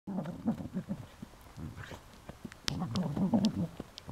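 Cardigan Welsh Corgi growling in play while shaking a toy, in two rough bursts a second or so apart, with a few sharp clicks during the second.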